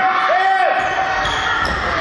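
Handball game noise in a sports hall: players and spectators calling out, echoing off the hall, with a short rising-and-falling call about a third of a second in.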